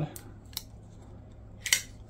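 QSP Swordfish button-lock folding knife being worked by hand: a faint tick about half a second in, then a short, sharp metallic click near the end as the blade is released and swung toward closed.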